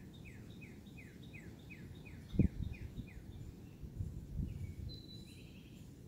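A bird calling: a run of about ten short falling notes, roughly three a second, that fades out after about three seconds. A single low thump sounds about midway and is the loudest event.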